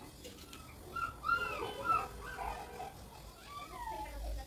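A dog whimpering: several short, high whines that rise and fall in pitch. The loudest come about a second and two seconds in, and a falling whine comes near the end.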